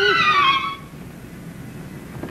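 A short whistle-like tone gliding down in pitch for under a second, the comic sound of a fall during a practice jump from a window. It overlaps the end of a man's held hum; after it only faint old-soundtrack hiss remains.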